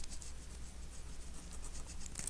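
Pen scratching on paper in a string of short strokes as something is written, over a faint steady low hum.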